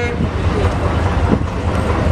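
Steady low rumble of an idling engine, with faint background voices from a crowd.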